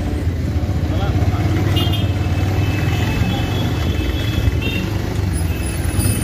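Motorcycle engine running steadily at a crawl in slow, crowded street traffic, with a low rumble and faint voices of people around.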